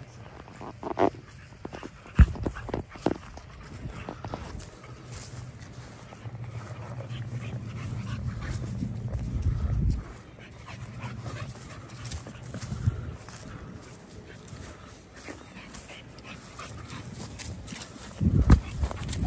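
A dog's sounds as it plays. There is a sharp knock about two seconds in, then a low rumble that builds and cuts off suddenly at about ten seconds.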